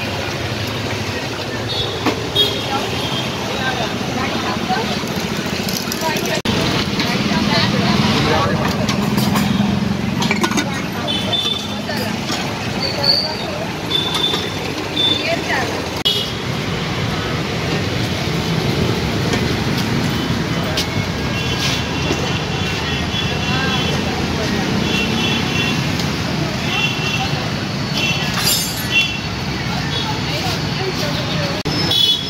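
Busy roadside ambience: traffic running past, with people talking in the background and a few short high beeps or toots in the second half.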